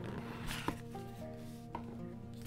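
Soft background music with held notes, with two light taps as a cardboard gift box's lid is lifted off.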